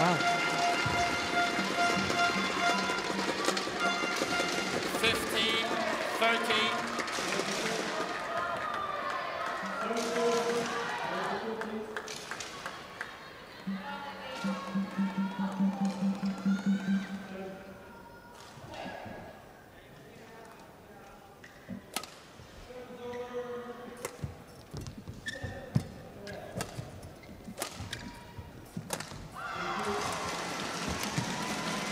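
Badminton arena noise between points: voices cheering and calling out, with music. Later it turns quieter, and a rally is played with sharp racket strikes on the shuttlecock roughly once a second.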